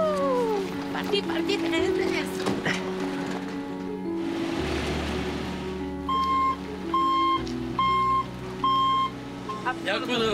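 Heavy truck's reversing alarm beeping about once a second from about six seconds in, while the truck is guided back, over music with long held tones.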